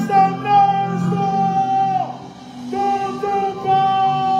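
Live concert music: a singer holding long, steady notes into a microphone. About two seconds in, one note slides down and the music briefly quietens before the held notes return.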